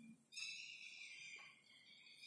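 Near silence: room tone with faint, steady high-pitched sounds.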